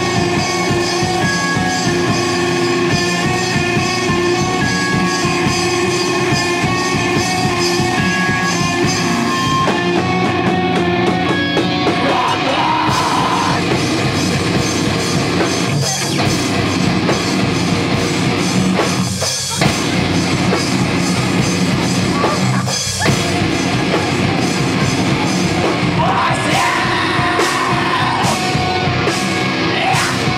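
Live heavy band playing loud: distorted electric guitars, bass and a drum kit, with shouted vocals. The band stops dead for an instant twice in the second half, then comes straight back in.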